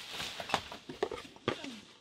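Cardboard box and its contents being handled and rummaged, a soft rustle with a few light knocks about half a second apart.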